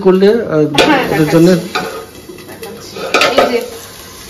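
Steel tongs clinking against a steel plate lid and a metal pan as the lid is handled over vegetables sizzling in oil, with sharp clanks about a second in and again past three seconds. A voice is heard in the first couple of seconds.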